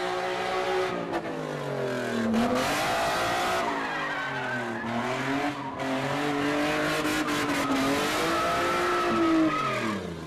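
A car engine revving hard and unevenly, its pitch rising and falling several times, while the tyres skid and squeal as the car drifts sideways.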